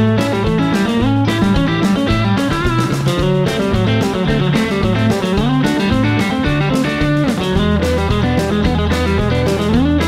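Electric guitar, a Telecaster-style solid body, playing country chicken-pickin' licks: quick double-stop pull-offs with a clipped staccato attack and a few bent notes, over a backing track with a bass line, moving through A, D and E chords.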